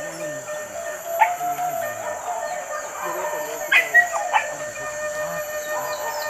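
Hunting dogs yelping: one short sharp yelp about a second in, then a quick cluster of yelps near the middle, over a steady high buzz.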